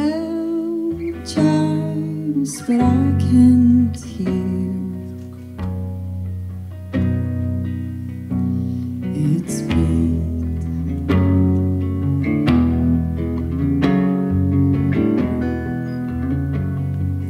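A live acoustic guitar song: an acoustic guitar playing chords, with a sung vocal line most prominent in the first few seconds.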